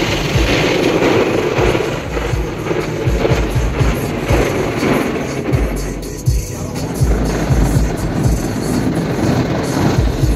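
Automatic car wash heard from inside the car: water spray pounding on the windshield and body in a steady wash of noise. Music plays in the cabin under it, with irregular low thumps.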